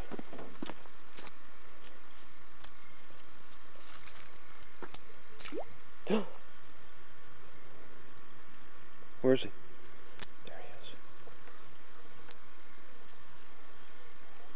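Steady high-pitched chirring of insects, crickets by the sound, along a creek bank. A few short sounds cut across it, the loudest a brief voice about nine seconds in.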